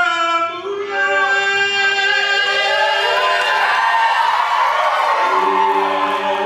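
Several voices singing a Samoan song together in long held notes, like a small choir.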